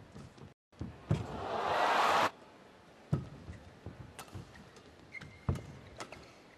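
Badminton rally: sharp racket hits on the shuttlecock and shoe thuds on the court. Arena crowd noise swells for about a second early on and then cuts off suddenly.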